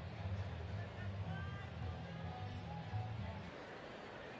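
Ballpark crowd noise, a dense murmur of many voices, which cuts off suddenly about three and a half seconds in.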